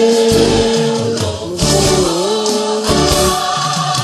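Gospel karaoke: a man singing a Portuguese worship song over a backing track with choir voices. It opens on a long held note, and the melody dips low about two seconds in.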